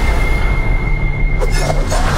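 Film-trailer sound design: a heavy, deep rumble under a steady high-pitched ringing tone that stops just before the end, with a sharp hit about a second and a half in.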